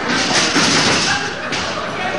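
Thud of wrestlers going down onto the wrestling ring's canvas, followed by about a second and a half of noise that then eases off.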